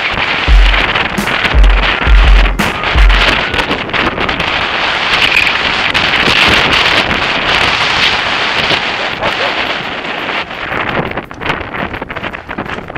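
Wind rushing over the microphone of a bike-mounted camera during a mountain-bike descent on a dirt trail, with the bike rattling over the rough ground. Deep bass thumps repeat through the first few seconds, then stop.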